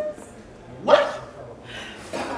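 A single short, sharp vocal cry, a bark-like shout, about a second in.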